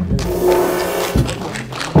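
Drum kit played in a short burst, cymbals ringing throughout, with sharp hits about a second in and again at the end.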